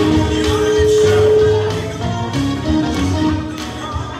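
Live church band music: held keyboard notes over drums keeping a steady beat.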